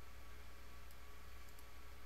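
Three faint computer mouse clicks, one about a second in and two close together near the end, over a steady low electrical hum and room noise.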